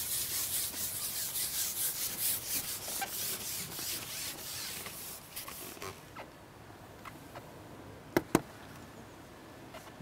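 Rubbing, scraping noise in quick uneven strokes that fades out over the first half, then two sharp clicks close together about eight seconds in.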